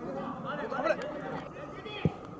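Several football players' voices calling out to each other during play, overlapping, with one sharp knock about halfway through.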